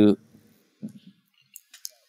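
A brief pause in a man's talk: his word trails off, a faint low murmur follows about a second in, then a couple of small sharp mouth clicks close to the microphone near the end, just before he speaks again.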